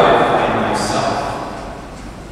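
A man's voice speaking in a large, echoing church, the words trailing off and dying away into the hall's reverberation toward the end.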